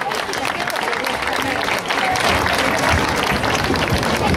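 Audience applauding, a steady spread of many hands clapping, with voices talking over it.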